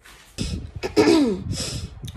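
A woman coughing: a rough burst that slides down in pitch about a second in, followed by a breathy exhale.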